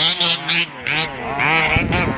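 Small engines of large-scale RC baja buggies revving in short bursts, the throttle blipped on and off several times with a rising and falling whine.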